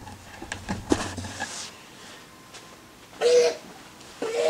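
Knocks, clicks and rustling of a handheld camera being moved and set down in the first second and a half, then a short, loud vocal sound from a person about three seconds in.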